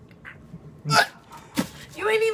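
A person gagging on a foul-tasting jelly bean: a sharp retching gulp about a second in, then a shorter one about half a second later.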